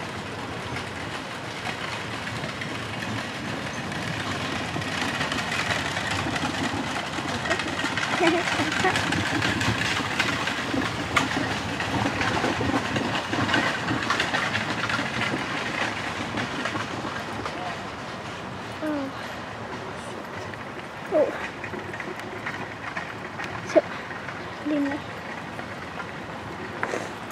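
Four-wheeled carriage drawn by a pair of horses rolling past, a clattering rattle of wheels, hooves and harness. It swells as the carriage comes close, then fades. A few short, sharp sounds come near the end.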